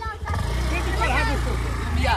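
Honda Activa scooter engine pulling away under throttle, a steady low hum that starts about a third of a second in, with voices calling over it.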